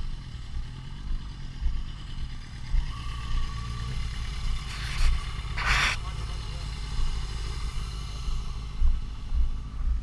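A motorcycle engine idling under a steady low wind rumble on the microphone, with two short rushing noises about five and six seconds in.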